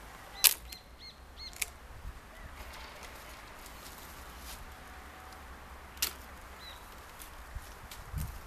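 Hand pruning shears snipping apricot branches: one sharp snip about half a second in, another at about a second and a half, and a third about six seconds in. Birds chirp briefly between the cuts.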